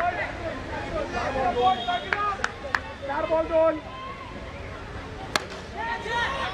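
Players' voices calling and shouting on an open cricket ground, with a few sharp knocks in between; the loudest knock comes about five seconds in.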